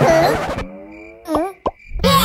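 Cartoon sound effects: a short noisy burst, then a soft falling tone and two quick pitched plop-like blips near the end.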